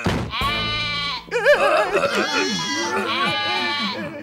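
A sudden bang right at the start, then sheep bleating: several long, wavering calls one after another.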